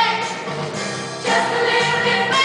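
A high school choir singing, with a soloist in front singing into a handheld microphone; the singing swells louder a little over a second in.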